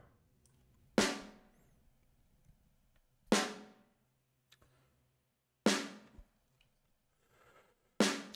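A live snare drum sample played back on its own, three hits a little over two seconds apart, each a sharp crack with a ringing tail that dies away in about half a second.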